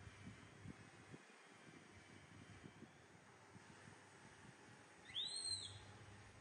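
Young macaque giving one short high squeak near the end, its pitch rising then falling; before it, only faint soft rustling.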